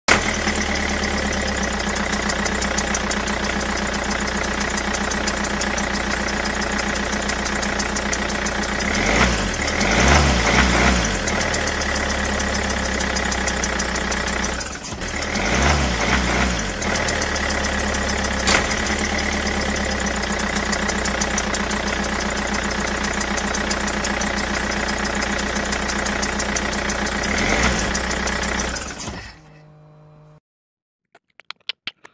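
Tractor engine running steadily at idle. Its note briefly changes twice, around nine to eleven and fifteen to seventeen seconds in, and the sound cuts off suddenly just before the end.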